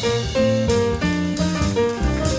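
Jazz piano trio playing: acoustic piano chords and lines with double bass and drum kit. The piano and bass come in right at the start, over drums that were playing alone.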